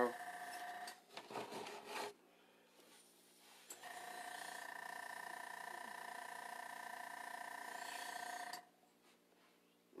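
Airbrush spraying paint: a steady hiss of air with a whining tone from its compressor, in two runs, a short one at the start and a longer one of about five seconds beginning about four seconds in, cutting off suddenly near the end.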